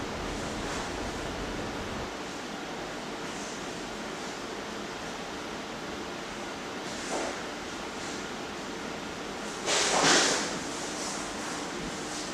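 Steady hiss of room noise with a faint, steady hum under it. A short rushing swell of noise comes about seven seconds in, and a louder one lasting about a second near ten seconds in.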